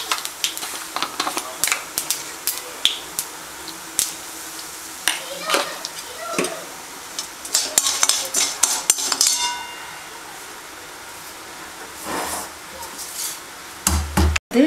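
Oil sizzling in an aluminium kadai with a tempering of mustard seeds, urad dal and dried red chillies, while a perforated steel ladle stirs and scrapes, clinking and knocking against the pan. The clinks come thickest around the middle, then give way for a couple of seconds to a quieter, steady sizzle before more knocks near the end.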